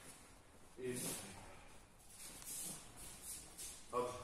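Cotton aikido uniforms rustling and bare feet moving on foam mats as the practitioners get up and reposition, with a short breathy vocal sound about a second in.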